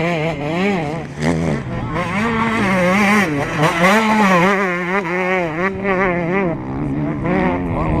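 Enduro dirt bike engine revving hard as it races past close by, its pitch rising and falling again and again with throttle and gear changes.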